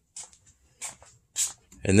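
Three soft footsteps on a concrete floor, about half a second apart, followed by a man starting to speak.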